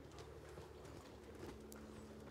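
Near silence: a low steady hum with a few faint, scattered hand claps.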